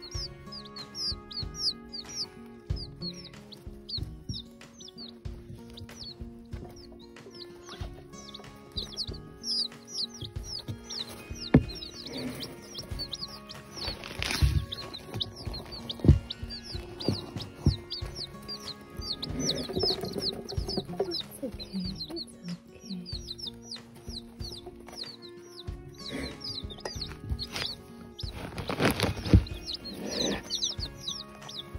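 A brood of Polish chicken chicks peeping non-stop in quick short falling chirps. A few sharp knocks and bumps stand out, the loudest about halfway through and near the end, as chicks press against the phone.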